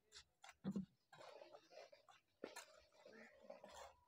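Faint bricklaying sounds: a mason's trowel tapping and scraping on bricks and mortar, with a low thump under a second in and a sharp click about two and a half seconds in.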